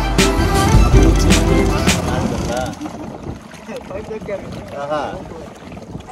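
Background music with a beat for the first two seconds, fading out by about three seconds in, leaving a speedboat's outboard motor running and water rushing past the hull, with faint voices.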